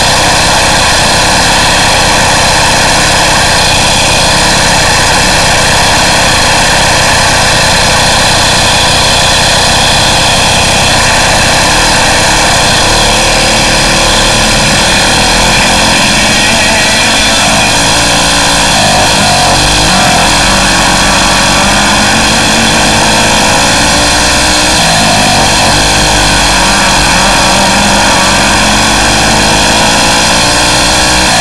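Racing kart engine running at speed during hot laps on a dirt track, with wind noise on the helmet-camera microphone. The engine pitch rises and falls repeatedly in the second half as the throttle comes on and off.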